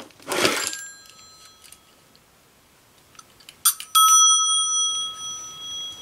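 Twin brass gongs of an old telephone bell ringer. A handling clatter with a faint ring comes near the start. A little before four seconds in there are a few quick strikes, then a clear bell tone that lingers and slowly fades.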